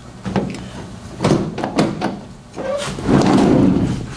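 Chevrolet Astro van's sliding side door being opened by its outside handle: a few clunks and clicks from the handle and latch, then the door rolling back along its track, the loudest part, near the end.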